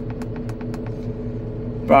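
Turbo-diesel engine of a Terex Franna AT20 crane idling with a steady low hum, heard from inside the cab. A light, fast ticking of about five a second runs over it and stops about a third of the way in.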